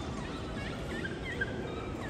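Steady airport terminal background noise with several short, high chirps in quick succession through the middle.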